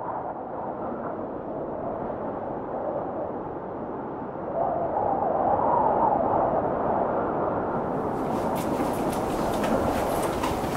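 A steady rumbling noise that swells a little about halfway through. From about eight seconds in, sharp clicks like footsteps join it.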